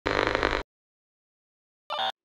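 Logo intro sound effect: a loud burst about half a second long, then silence, then a brief second burst near the end.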